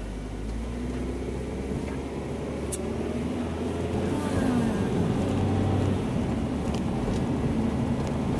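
Car engine and road noise heard from inside the cabin, growing steadily louder as the car pulls away from a stop and gathers speed.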